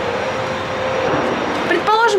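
Steady city background noise from a high balcony, a constant even hum of distant traffic, with a faint steady tone that fades out about a second in.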